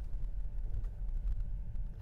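Steady low rumble inside the cabin of a Tesla Model 3 rolling slowly over a snow-covered street: tyre and road noise from the electric car.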